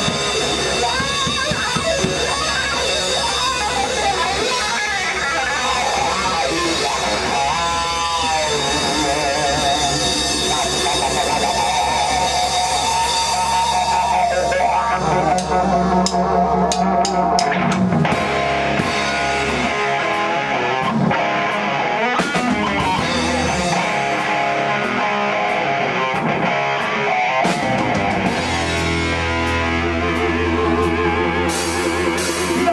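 Live blues-rock band playing an instrumental passage: electric guitar lead with bent, wavering notes over bass guitar and drum kit. The lowest bass drops away for several seconds in the second half and returns near the end.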